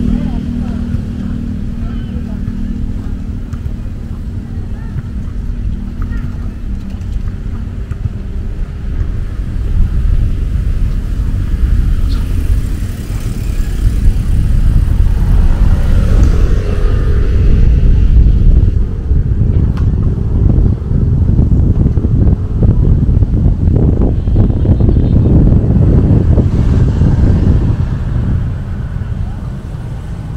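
Low wind rumble on a moving microphone, mixed with passing road traffic, growing louder from about the middle.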